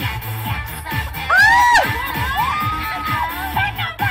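Dance track with a steady bass beat and a crowd cheering over it. Two loud yells stand out: one rising and falling about a second and a half in, then a longer held one.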